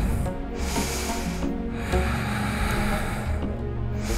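Soft background music with two long, hissy breaths close to the microphone, the second starting about two seconds in.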